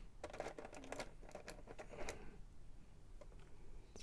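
Light clicks and taps of plastic and metal action-figure parts being handled as a sword is fitted into the hand of a Bandai Metal Build Gundam 00 Qan[T] figure. The clicks come thickest in the first two seconds and then thin out.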